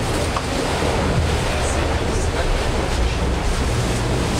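Loud, steady rush of water against the hull of a maxi-trimaran sailing at speed, with a heavy low rumble, heard from inside the boat's cabin.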